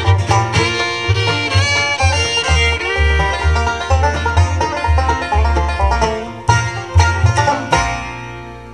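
Bluegrass band playing an instrumental ending: banjo, fiddle, mandolin, acoustic guitar and upright bass together over a moving bass line. A few sharp accented chords come in the last second and a half, and the final chord is struck right at the end.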